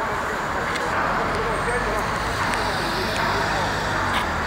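Street traffic noise with a car's engine running as it turns across close by, a low steady hum, over indistinct chatter of passers-by.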